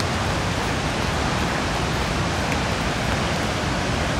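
Steady rushing noise of falling water, with a faint tick now and then.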